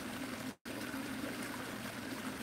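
Steady trickle of running water from a garden pond, with a brief dropout to total silence about half a second in.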